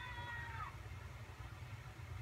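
A single drawn-out, high-pitched call, falling slightly in pitch and ending about two-thirds of a second in, over a steady low hum.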